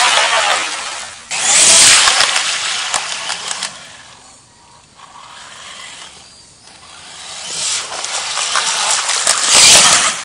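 Electric RC monster truck driving through a muddy puddle: water splashing with the whine of its motor and drivetrain. Loud at first, it drops away in the middle and builds again to its loudest near the end as the truck charges back through the water.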